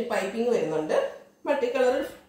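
A woman talking, with a short pause about a second in.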